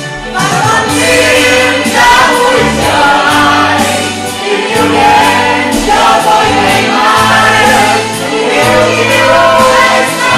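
A choir of mixed voices singing a Vietnamese song together over instrumental accompaniment with a steady bass line. The singing swells louder about half a second in.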